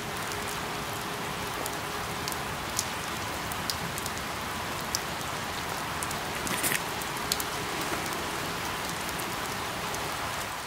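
Steady rain falling on leaves, with a few sharp individual drips ticking here and there.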